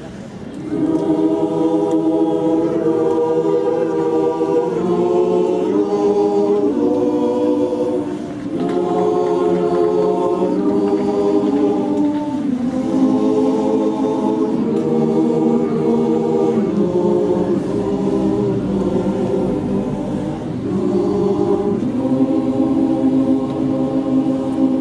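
Mixed choir of men and women singing a cappella in sustained, slowly moving chords. The singing swells in just after a brief pause at the start and breaks briefly for breath about eight seconds in.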